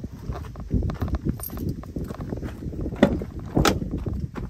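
Footsteps on gravel, followed by two sharp clicks about three seconds in as a pickup truck's door is unlatched and swung open.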